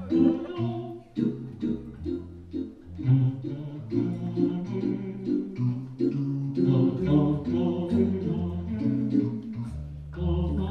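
A cappella vocal piece: male voices singing wordless syllables in several layered parts, with a steady rhythmic pulse throughout.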